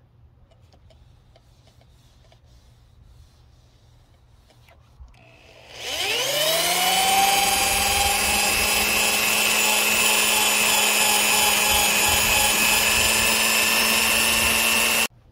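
Corded hammer drill with a foam buffing pad: after a few quiet seconds it spins up about six seconds in, its whine rising in pitch and then settling into a steady high-pitched run as it buffs rubbing compound into car paint.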